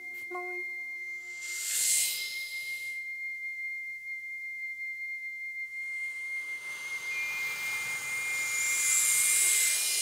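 Vocal-only ensemble: a steady high, pure tone is held throughout, and a second, slightly higher tone joins about seven seconds in. Breathy hissing 'shh' sounds swell briefly about two seconds in and again, louder, over the last few seconds, evoking waves. A few short sung notes stop just after the start.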